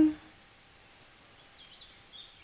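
Faint, short bird chirps begin about one and a half seconds in, over a low steady hiss, just after the end of a woman's spoken word at the start.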